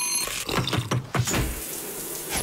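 A short electronic beep, then a rapid run of clicking, rattling mechanical sounds over a hiss like running water: a produced sound-effect sequence.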